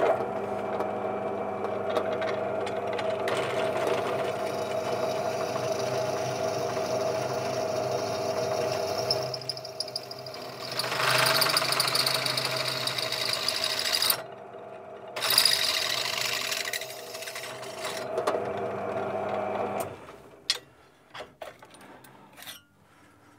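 Bench pillar drill running, its motor giving a steady hum as the bit is fed through a steel bracket to drill a locating hole. Harsher cutting noise rises in the middle as the bit bites the steel, with a short easing-off, and the drill stops near the end, followed by a few light clicks.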